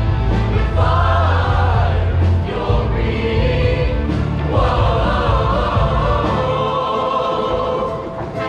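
Show choir of mixed voices singing with a live band. The singing swells loudest about one second in and again from about four and a half seconds, over a strong steady bass that drops out about two and a half seconds in.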